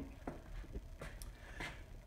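Quiet room with a faint low hum and a few short, faint clicks.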